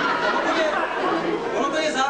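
Several people talking at once in a large hall: overlapping chatter with no single clear voice.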